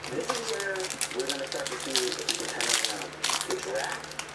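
Foil wrapper of a hockey card pack crinkling and being torn open by hand in quick, crackly bursts, with a faint voice underneath.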